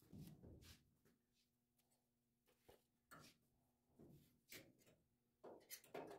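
Near silence, with a few faint, brief rustles and taps scattered through it, the sound of hands handling things close by.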